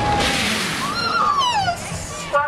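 Drop-tower riders screaming as the gondola drops: a loud rush of noise, then several high screams sliding down in pitch in the second half.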